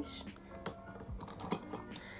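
A few light, irregular clicks and taps of small items being picked up and handled, over faint background music.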